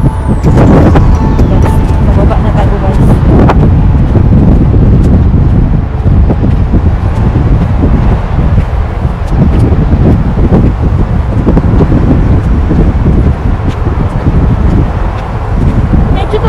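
Wind buffeting the microphone, a loud low rumble that swells and dips in gusts.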